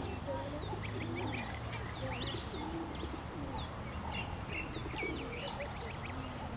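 Domestic goose goslings peeping: many short, high peeps that rise and fall, scattered all through, over a steady low background rumble.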